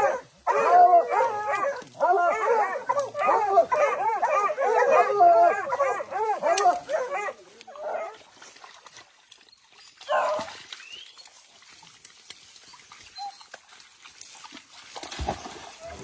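A pack of young hunting hounds baying and yelping in rapid, overlapping cries at a cornered young peccary for the first seven seconds or so. After that it goes much quieter, with one more short cry about ten seconds in.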